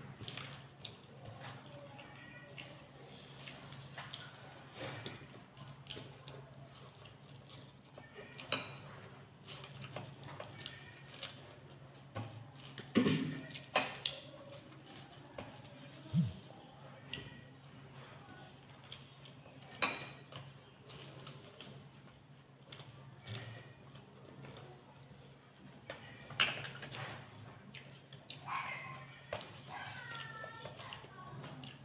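Hand-eating sounds: fingers mixing and scraping rice on a plate and soft chewing, heard as scattered small clicks and scrapes, the loudest about thirteen seconds in. A faint steady hum runs underneath.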